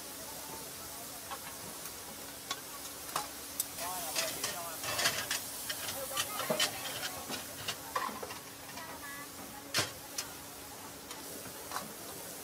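Meat slices sizzling on a flat-top griddle, with a metal spatula scraping and clacking against the steel. The clacks come thickest in the middle, and one sharp clack falls near the end.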